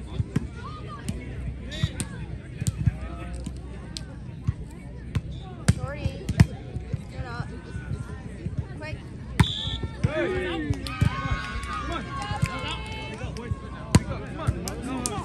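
Volleyball being struck by hand during a rally, sharp smacks scattered through, with players and spectators shouting loudly from about two-thirds of the way in as the point ends.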